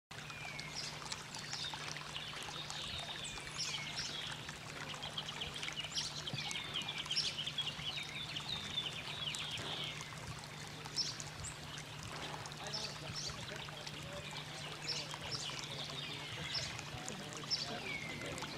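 Birds calling and singing all through, with repeated short chirps and swooping calls, over water trickling along a small stone-lined channel. A steady low hum runs underneath.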